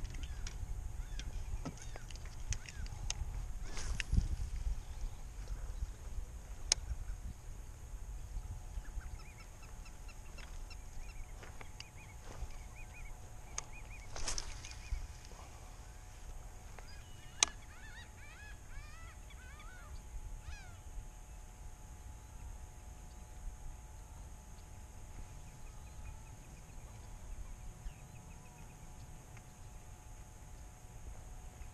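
Waterbirds calling in the distance with short honk-like calls, most of them clustered a little past the middle, over a low rumble of wind and lapping water. A few sharp clicks stand out, the loudest just past the middle.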